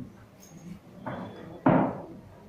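Two thumps about half a second apart, the second much louder.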